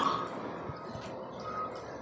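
Quiet background hum of a work yard, with one short, faint high beep about one and a half seconds in.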